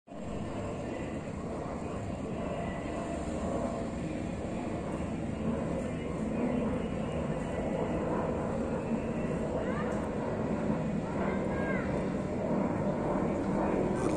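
Jet airliner flying overhead: a steady rushing engine noise that slowly grows louder. A few short chirps come through about ten seconds in.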